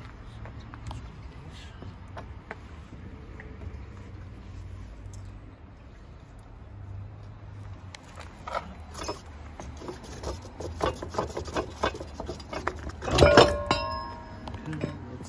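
Metal clinking and rattling as a Brahma wheel lock is unlocked and worked off a camper trailer's wheel: scattered light clicks at first, a quick run of clinks in the second half, and a loud ringing clank near the end.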